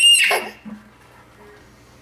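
A child's short, very high-pitched squeal that rises and falls in the first half second, then quiet room tone.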